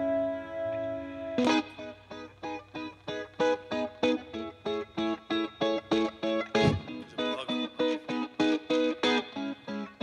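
Live band instrumental intro: a held chord rings for the first second or so, then an electric guitar picks a repeating riff of single notes, about three a second, with one harder accent a little past the middle.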